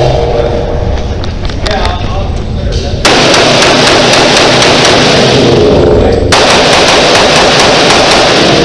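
Pistol fire in rapid strings of shots, echoing off the concrete of an enclosed indoor range, loudest from about three to six seconds in.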